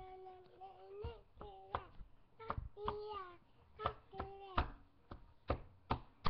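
A young child's voice holding drawn-out, sung notes, broken by a run of sharp knocks from hands tapping and slapping on a desk top, roughly every half second.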